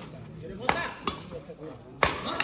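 Badminton rackets striking a shuttlecock in a rally: two sharp hits, the louder about two-thirds of a second in and a fainter one a moment later.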